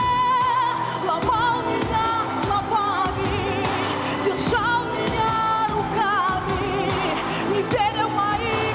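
A woman singing a pop song into a microphone over pop accompaniment, carrying a held high note with vibrato into quick runs that bend up and down in pitch.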